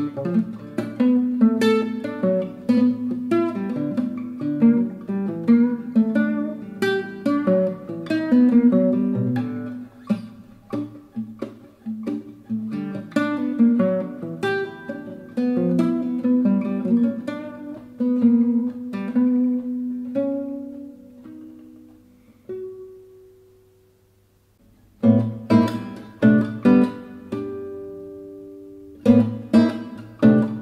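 Fretless nylon-string classical guitar played fingerstyle in a free, atonal improvisation. A busy run of plucked notes thins out about two-thirds of the way through to a few long ringing notes and a brief pause, then the playing picks up again.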